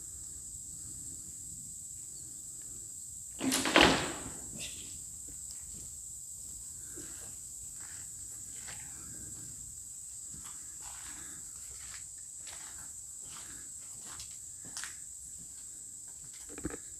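Footsteps on a debris-strewn concrete floor: faint irregular steps, with one louder crunching scuff a little under four seconds in. A steady high-pitched drone sits under them throughout.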